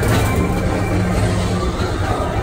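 Tomorrowland Transit Authority PeopleMover car running along its track through a tunnel: a steady low hum and rumble from the track-mounted linear induction motors and the rolling car.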